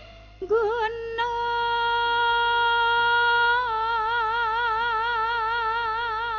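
A high voice sings one long held note in the manner of a wayang singer. It slides into the note about half a second in and holds it steady, then wavers with a wide, even vibrato for the second half.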